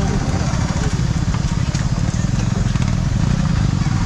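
Yamaha R15 V3 single-cylinder engine running steadily at low revs with a rapid pulsing beat, as the bike rolls slowly and slows to a stop.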